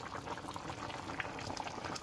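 Pork stew in thick gravy bubbling in a pot on the stove: a low, steady bubbling with small pops.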